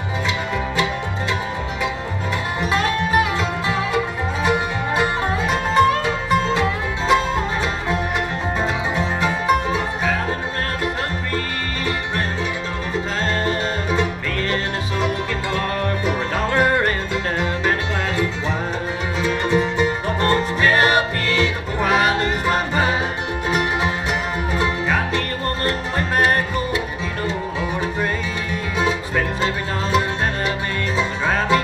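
An acoustic bluegrass band playing live: banjo, guitar, mandolin and dobro over a string bass line, with quick picked notes.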